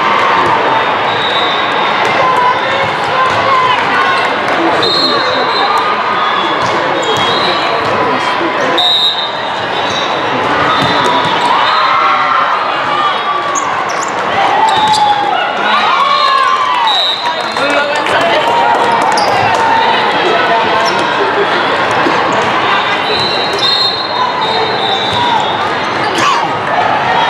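Busy noise of a large hall with several volleyball matches under way: many overlapping voices and shouts from players and spectators, with thuds of volleyballs being hit and bouncing, and short high whistle-like tones now and then.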